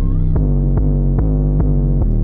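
Backing music of a rap song with no vocal: a deep, sustained bass and steady chords under an even beat about two and a half times a second.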